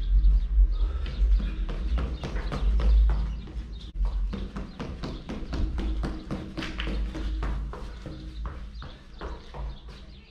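Quick, light footfalls of sneakers on a concrete floor, several a second, as a person runs a footwork ladder drill, over a low rumble.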